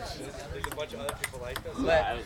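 Table tennis ball clicking off paddles and the table tabletop during a point, several sharp ticks in quick succession, with a man's voice near the end.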